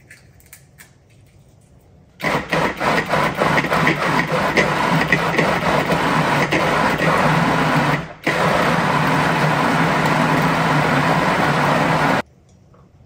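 Countertop food processor chopping tomatoes, onions and peppers into salsa. The motor starts about two seconds in, with chunks knocking against the blade and bowl at first. It cuts out for a moment about eight seconds in, then runs steadily again.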